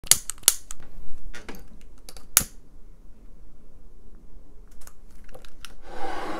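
A run of sharp clicks and taps from handling small hard objects on a tabletop, about eight in the first two and a half seconds, the last with a short ring. A few fainter clicks follow near the end.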